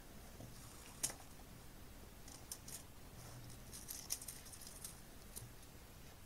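Light handling of plastic packaging: one sharp click about a second in, then a run of small crinkling ticks as a plastic component bag and a strip of clear plastic component carrier tape are handled.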